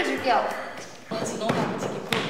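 Several people making a rhythmic beat of thumps, about two a second, starting about a second in, with voices mixed in.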